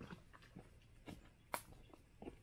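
Footsteps of a person walking past on a rocky, muddy track: a short knock roughly every half second, the loudest step about three quarters of the way through.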